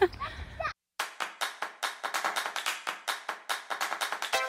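A brief outdoor voice with wind rumble on the microphone, then, after a sudden cut, the percussive intro of a background music track: rapid clap-like hits, several a second.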